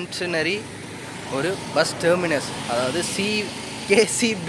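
A man talking in short phrases over steady outdoor background noise.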